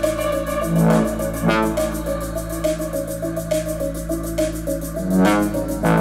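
A recorded song playing back over a hi-fi system: sustained chords over a deep, steady bass line, with a regular ticking beat.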